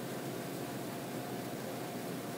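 Steady, even hiss of background room noise, with no distinct sounds standing out.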